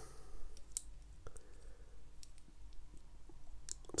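Faint, scattered clicks of hard plastic miniature parts handled between the fingers and pressed together, a torso section being fitted onto the body of a model kit.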